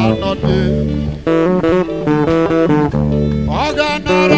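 Live praise band playing, led by guitar, with low bass notes held in long phrases under the chords. A rising sliding note comes in near the end.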